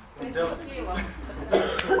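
Quiet voices of audience members answering a question, softer than the lecturer's close voice, with a cough among them.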